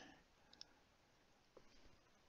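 Near silence: faint room tone with a soft computer mouse click about half a second in.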